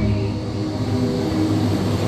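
DarKoaster roller coaster train rolling slowly along its track toward the station: a steady low drone with a few held humming tones.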